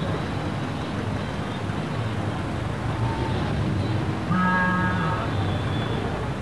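Street ambience: steady traffic rumble, with one short held tone a little past four seconds in.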